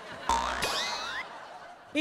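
A cartoon-style boing sound effect: a sudden springy hit with a low thud, followed by wobbling pitch glides that sweep up and down and fade within about a second.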